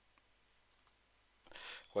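A few faint computer mouse clicks in a quiet room, followed near the end by a short breath drawn in before speech.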